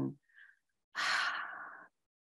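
A woman's audible breath out close to the microphone, a hiss without pitch lasting about a second, starting about a second in and fading before it cuts off.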